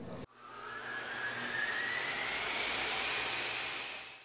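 Jet engine sound effect: a steady rush with a whine rising slowly in pitch, fading in a moment after a sudden cut.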